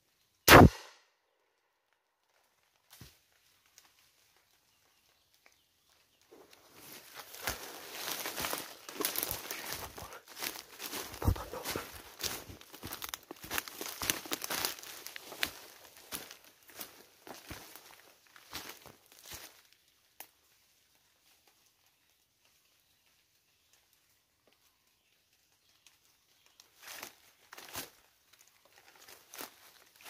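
A single gunshot about half a second in, sharp with a brief ring-off. From about six seconds in comes a long run of footsteps crunching and rustling through dry leaf litter and undergrowth, which stops, and a few more steps sound near the end.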